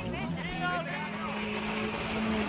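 A rally car's engine droning, rising in pitch over the first second and then holding steady, with people's voices talking over it.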